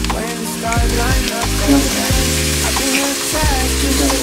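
Onion and garlic sizzling in a frying pan as button mushrooms and their liquid go in, with a spatula stirring through them. Background music with a steady bass beat plays underneath.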